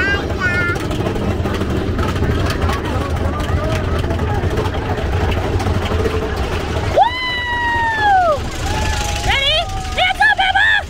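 Big Thunder Mountain Railroad mine-train roller coaster rumbling along its track, with riders whooping: one long falling scream about seven seconds in, then short rising whoops near the end.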